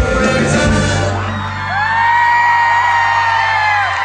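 Live Iranian pop band ending a song: drums and band play for about a second, then a low final note is held. Over it a single voice lets out one long, high whoop that slides up, holds and falls away near the end.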